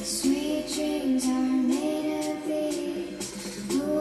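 A song playing, with a female voice singing a melody of held notes.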